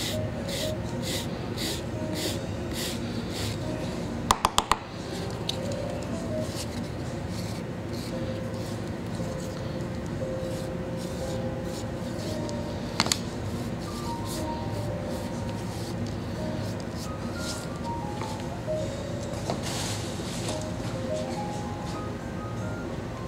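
Surform rasp scraping leather-hard clay to erase the seams, in even strokes about three a second that grow fainter after a few seconds, with a cluster of sharp clicks about four seconds in. Quiet music plays underneath.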